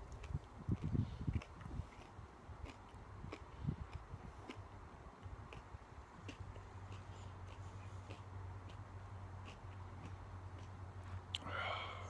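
A man chewing a bite of raw yellow Primo superhot pepper: soft, irregular crunching and mouth noises, strongest in the first couple of seconds and again about four seconds in, then fading to faint chewing over a steady low hum.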